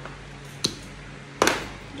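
A light click and then, less than a second later, a louder sharp knock with a short ring, from tableware being handled on a dining table.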